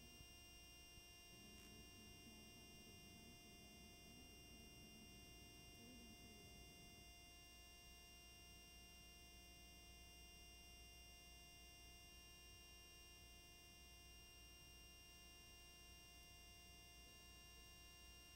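Near silence: only a faint steady electrical hum and hiss.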